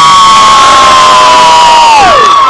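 A person in the crowd screaming one long, high-pitched, held scream, dropping off at the end, over crowd cheering.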